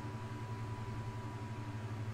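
Steady low hum with a faint hiss, the background noise of the recording, and a faint thin high tone that fades out near the end.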